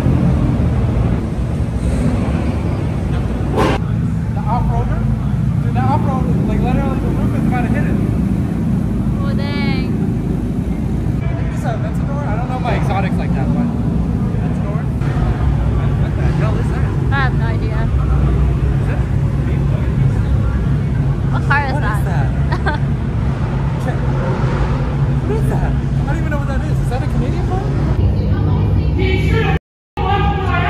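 Performance car engines rumbling loudly as modified cars drive out one after another through a concrete parking garage, which adds echo. Onlookers' voices come and go over the engine noise.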